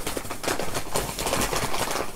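Rustling and crinkling of packaging being handled and opened, a dense, irregular run of small crackles.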